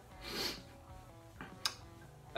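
One short, forceful breath out about half a second in, from a man exerting himself while swinging his arms fast as if running, over faint background guitar music. A brief click follows near the end.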